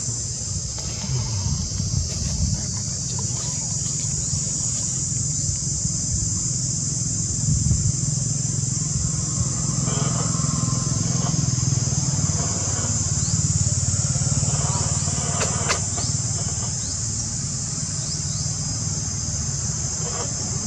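A steady high-pitched insect chorus, with a low steady motor-like hum underneath.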